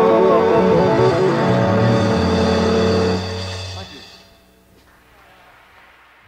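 Live country-rock band (guitars, bass and drums) playing the final bars of a song, ending on a low note held until about four seconds in. The music then drops away to a faint hiss.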